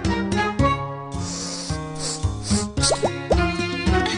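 Bright children's jingle from a TV channel ident, with pitched notes over a bass line. About three seconds in come three quick rising plop sounds.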